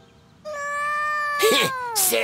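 Cartoon kitten giving one long meow, starting about half a second in and sagging in pitch toward its end, with a raspy break near the end.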